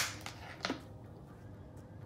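A sharp plastic snap from a collapsible cup being handled, then a fainter click less than a second later.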